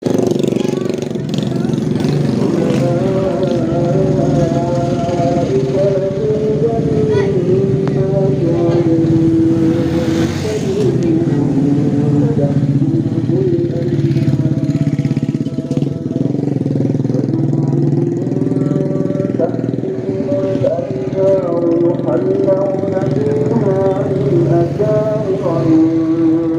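Street traffic with motorcycles and cars passing, under a continuous sound of long, slowly wavering held notes.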